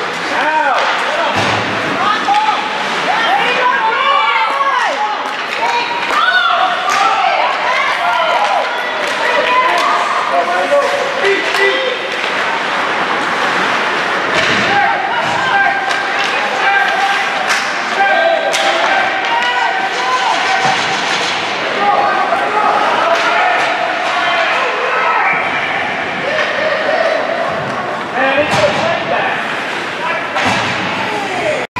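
Ice hockey game in play: many overlapping voices of spectators and players calling out, with sharp clacks of sticks and puck and several slams against the boards.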